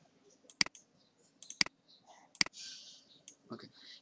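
Computer mouse button clicking a few times, sharp clicks about a second apart, while resizing spreadsheet columns.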